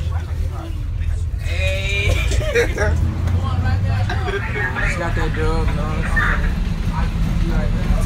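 Steady low drone of a school bus engine heard inside the cabin, with boys' voices talking over it from about a second and a half in.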